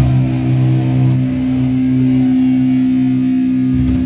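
Live band's distorted electric guitar and bass holding one low chord that rings on steadily, with the drums dropped out. Cymbal hits come back in right at the end.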